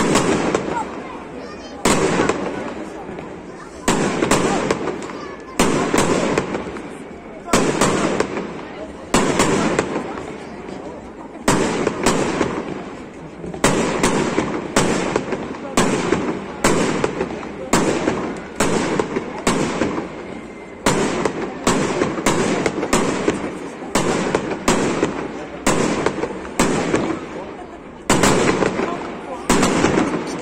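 Aerial firework shells bursting one after another, a loud bang about every second, each trailing off over a second or so before the next.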